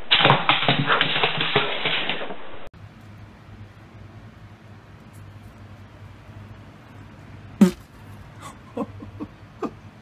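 A dog making loud, rapid noises for the first two to three seconds. It cuts off suddenly into a quieter room with a steady low hum, one sharp knock near the end, and a few short pitched sounds just after it.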